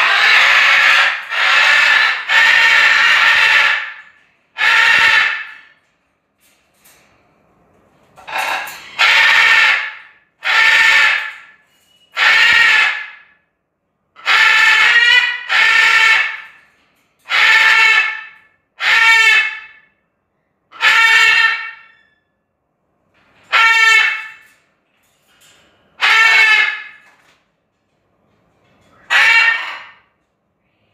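Blue-and-gold macaw screaming loudly over and over, about fifteen harsh, pitched calls of roughly a second each, spaced a second or two apart with one longer pause about six seconds in. The bird is agitated and has not yet calmed down.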